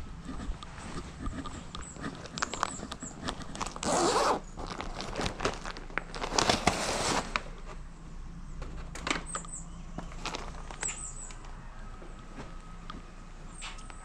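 Handling of an insulated food-delivery bag and a paper takeout bag. The bag's closure gives a short rasp about four seconds in and a longer one from about six to seven seconds, among light clicks and rustling.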